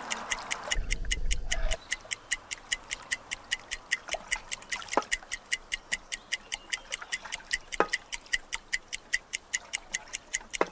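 A ticking clock sound effect, an even, fast tick of about four ticks a second, marking the seconds held underwater. A hiss and low rumble under the ticking cut off suddenly a little under two seconds in.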